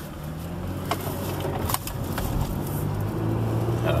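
Car engine and road noise heard from inside the cabin as the vehicle pulls away from an intersection and speeds up, the hum growing steadily louder, with a few faint clicks about a second or two in.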